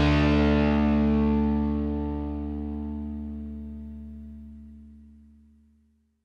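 The final chord of a rock song ringing out on distorted electric guitar, held and fading steadily until it dies away about five seconds in.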